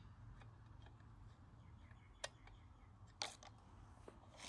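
Near silence with two brief clicks, a sharp one a little past two seconds in and another about a second later, from hands and a tool handling a stopped chainsaw.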